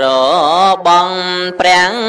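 A man's voice intoning a Khmer Buddhist sermon in a sung, chant-like style. He holds long notes that waver and glide in pitch, with two brief breaks.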